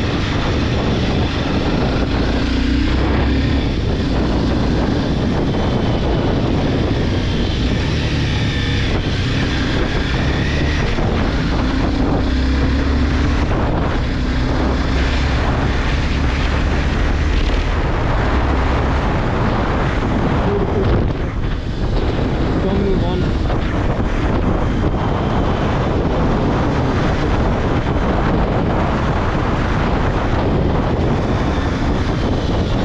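Honda CBR250R's single-cylinder engine running under way at road speed, its note rising and falling with the throttle, under steady wind rush on the microphone.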